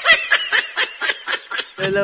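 A person snickering: a quick run of short, breathy bursts of held-in laughter, followed near the end by a spoken word.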